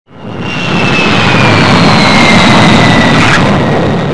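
Jet aircraft flying past: a loud, steady roar that fades in quickly, with a high whine slowly falling in pitch.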